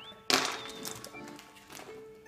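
Brach's candy corn bag ripped open in one sharp tear about a third of a second in, fading quickly, over background music.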